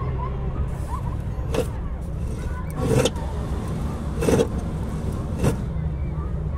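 A steady low hum like a nearby engine running, with four short, sharp knocks spaced about a second and a quarter apart.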